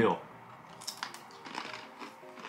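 After the tail of a laugh, a few sharp crunches of a thin, flattened pretzel being bitten and chewed come about a second in, over faint background music.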